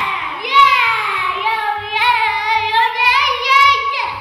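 A boy's high voice held in long, sliding, wavering notes, loud throughout and fading at the very end.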